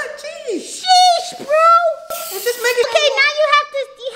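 High-pitched voices talking, with a short spray hiss from an aerosol can about halfway through.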